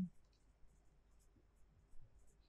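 Faint, sparse scratches and light ticks of a stylus writing letters on a digital tablet.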